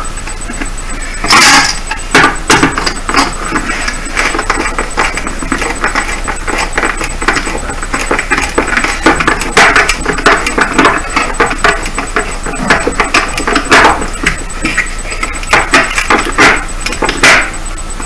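Twisted metal wire being handled and wound around a screw on a wooden board: irregular small clicks and scrapes of metal, with a few louder scrapes.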